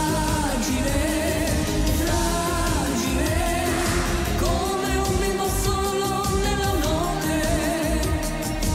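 Italian pop ballad duet: a man and a woman singing over a band backing with a steady beat.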